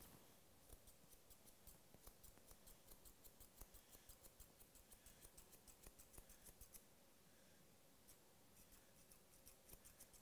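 Grooming chunker shears snipping through a dog's coat in quick, quiet cuts, about three or four a second, pausing about seven seconds in and starting again briefly near the end.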